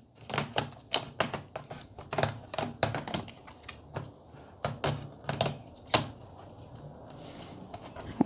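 Sony VAIO laptop battery being slid into its bay on the underside of the laptop: a quick run of irregular plastic clicks and knocks, with a sharper click about six seconds in.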